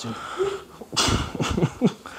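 A man laughing breathily: a short hum, then a sharp burst of exhaled breath about a second in, and a few quick wheezy laugh pulses near the end.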